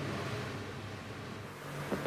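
Faint steady hiss with a low hum: background noise of a live broadcast feed in a gap between presenters' lines.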